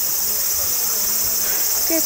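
A chorus of summer cicadas calling: a loud, steady, high-pitched drone that does not let up.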